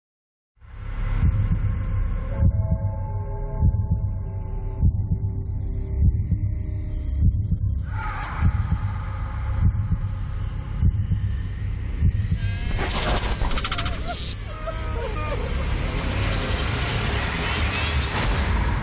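Dramatic advertisement soundtrack: a deep, heartbeat-like thump a little over once a second, starting about half a second in. Sustained tones sit over it at first, and noisier, wavering sound effects build up over it in the second half.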